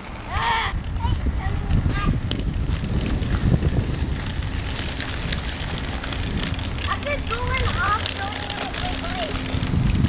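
Low rumbling wind and handling noise from the moving camera. A child lets out a high rising shout about half a second in, and children's voices call out again near the end.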